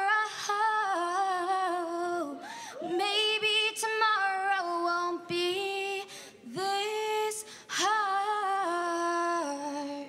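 Two girls singing a song into microphones through a PA, holding long sustained notes with slides between them.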